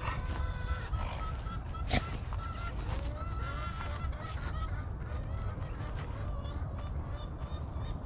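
Birds calling over and over at a distance, a run of short pitched calls, over a low rumble, with one short knock about two seconds in.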